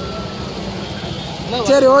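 Low, steady outdoor background rumble. A man's voice starts about one and a half seconds in.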